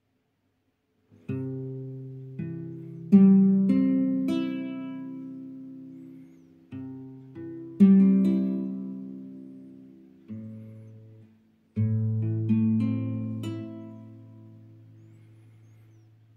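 Nylon-string classical guitar fingerpicked, stepping between A minor and C chord shapes. There are three phrases, starting about a second in, and each opens on a bass note before the higher strings are picked. The notes are left to ring and fade.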